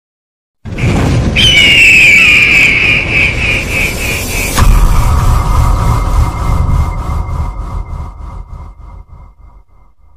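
Logo-intro sound effect: a shrill high tone that dips in pitch and pulses, then a deep boom about four and a half seconds in, followed by a lower ringing tone and rumble that fade away.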